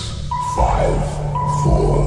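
Background music with a beat: a high beeping tone repeating about once a second over a held deep bass note and short cymbal-like hits.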